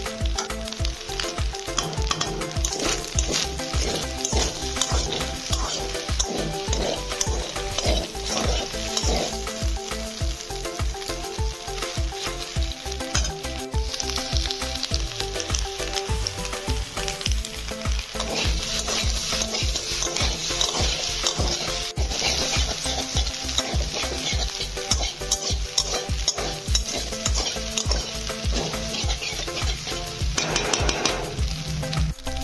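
Macaroni and meat frying in a metal wok, sizzling as a metal spatula stirs and scrapes through it; the sizzle grows brighter in the second half.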